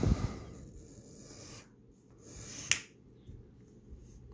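A coin scraping the latex coating off a paper scratch-off lottery ticket in short rubbing strokes, with one sharp click about two and a half seconds in.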